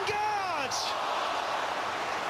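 Large football stadium crowd making a steady din as an attack breaks toward goal. It opens with the tail of a commentator's shout that falls in pitch over the first half-second.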